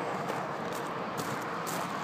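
Steady outdoor background noise, an even hiss, with a few faint taps of footsteps as a person walks.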